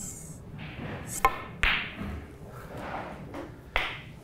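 Snooker balls clicking on a shot: a sharp, ringing click about a second in, a short rush of noise just after it, and another sharp click near the end.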